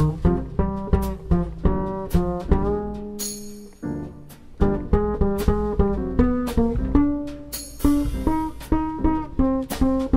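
Acoustic double bass played pizzicato in a jazz band, plucking a string of separate notes in a slow groove with other band instruments. The playing thins to a short lull about four seconds in, then picks up again.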